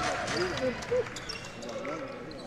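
A basketball dribbled on a hardwood court, a few sharp bounces, with faint voices in the arena.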